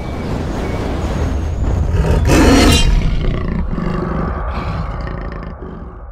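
Cinematic sound design: a deep, loud rumble with a rough roar rising to a peak about two seconds in, then fading away as faint steady tones come in near the end.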